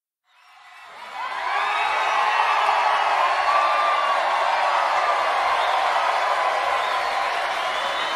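Large concert crowd cheering and screaming, many voices at once, fading in from silence over the first second or so and then holding steady.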